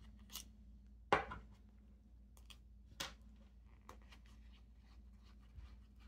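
Quiet handling of a fountain pen wrapped in a paper towel while its nib unit is unscrewed: soft paper rustling with a few light clicks of the pen parts, the sharpest about a second in.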